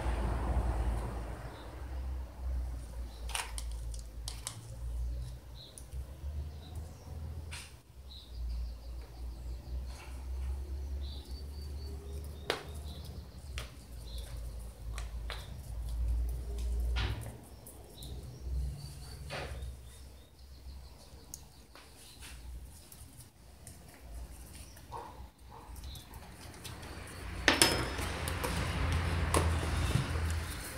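Scattered light clicks and taps of a metal teaspoon and a plastic fertilizer tub being handled while granular organic fertilizer is spooned onto potted orchids, over a low steady rumble. There are a few faint bird chirps, and a sharper knock near the end.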